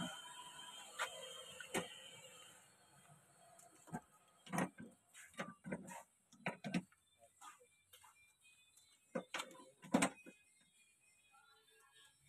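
Scattered sharp metallic clicks and knocks of hand tools being worked at the pipe connections of an air-conditioner outdoor unit, loudest about ten seconds in. Faint steady tones sound under the first couple of seconds.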